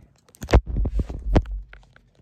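Handling noise from a phone camera being picked up and carried: a few knocks and rubs right on its microphone with a low rumble, the sharpest knock about half a second in.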